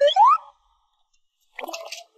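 A quick rising cartoon "boing"-style sound effect, an upward pitch glide lasting about half a second. Near the end comes a brief, noisier clatter.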